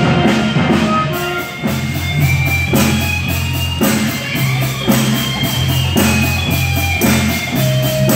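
A small jazz band playing live: drum kit keeping a steady beat under bass notes, electric guitar and saxophones.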